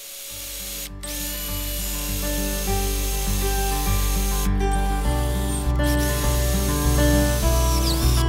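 Background music over a cordless drill boring a hole through a steel bar. The drill's high whine and cutting hiss break off briefly about a second in and again around the middle.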